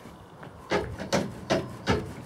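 Rhythmic knocking on a horse trailer, about two and a half knocks a second, starting just under a second in.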